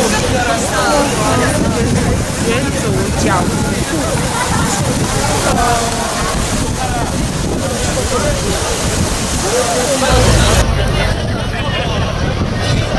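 Outdoor crowd babble: many people talking at once, no single voice standing out. About ten and a half seconds in the sound changes abruptly and a low rumble rises.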